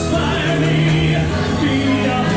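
A singer's voice, amplified through a handheld microphone, sings a song over music accompaniment. Held, sustained notes with a steady low bass line beneath.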